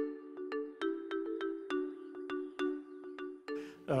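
Short interlude music: a bright, chiming melody of struck notes, about three a second, over a held chord.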